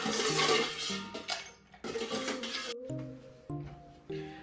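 Ice cubes clattering into a tall glass mixing glass in two spells, over background music.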